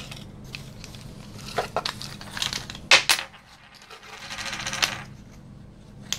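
Small wooden discs clicking against each other as they are handled and tipped out of a cloth drawstring bag, a few sharp clicks with the loudest about three seconds in, followed by a rough rustling scrape about four seconds in.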